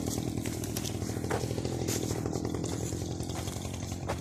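Kirloskar Kubix brush cutter's small petrol engine running steadily at an even speed, with no revving.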